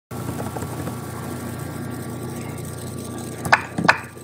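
A steady low hum with faint steady tones above it, broken near the end by two sharp clicks about half a second apart.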